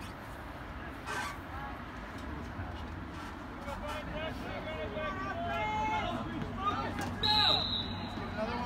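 Shouts and calls from players and onlookers across an open soccer field, then about seven seconds in a single high, steady whistle blast from the referee's whistle.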